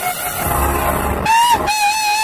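A man's singing voice: a single high note starts a little over a second in and is held long and steady, with a backing of music.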